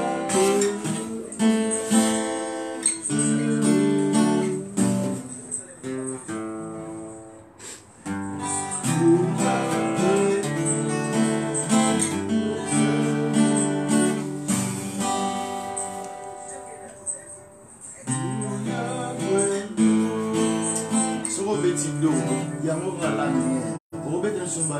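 Two acoustic guitars played together, picking and strumming a melodic accompaniment, with two brief softer lulls about eight and seventeen seconds in.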